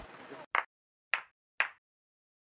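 Three short pop sound effects, about half a second apart, as on an animated logo end card.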